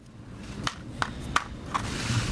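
A few light, sharp clicks of the small plastic USB-stick case and circuit board being handled and set down on the work mat.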